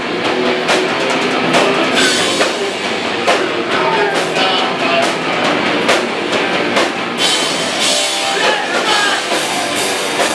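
Hardcore punk band playing live: distorted electric guitars and a drum kit at full volume, with steady, regular drum hits.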